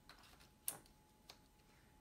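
A few small sharp clicks from hands handling a Sony a7R II mirrorless camera body, the loudest about two-thirds of a second in, against near silence.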